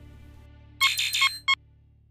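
Outro music fading out under a short electronic logo sting: a quick run of bright beeping tones about a second in, then one more short beep half a second later.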